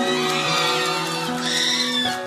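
Female vocalist singing a slow pop ballad live into a handheld microphone over soft instrumental backing, holding a long note with vibrato near the end.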